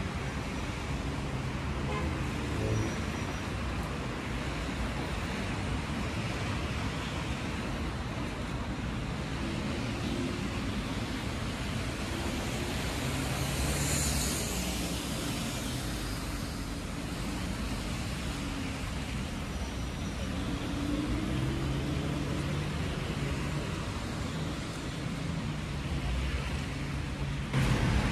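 Street traffic on a wet avenue: a steady rumble of car and bus engines with tyre noise. About halfway through, an articulated bus passes close by, with a brief louder hiss.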